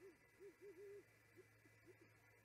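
Great horned owl hooting: a faint run of low, soft hoots, three quick ones running into a longer hoot in the first second, then two softer hoots near the end.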